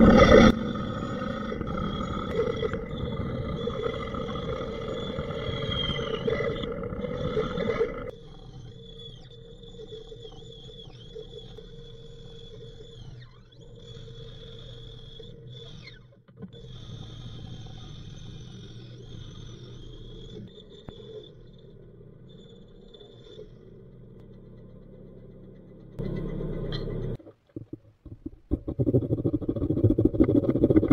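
Benchtop bandsaw running and cutting an oak handle blank with a dull blade. It is loud through the first several seconds, then quieter with a steady high whine, with a short louder stretch near the end. In the last second or two a handsaw strokes back and forth through wood.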